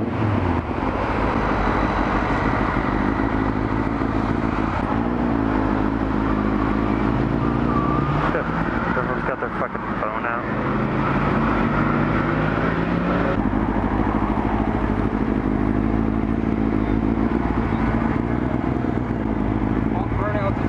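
Motorcycle engine running at low speed, heard from on the bike, its pitch stepping up and down a few times with the throttle, over road and wind noise.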